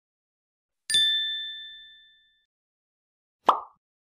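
Logo-animation sound effects: a bright two-tone ding about a second in that rings and fades over about a second, then a brief pop near the end.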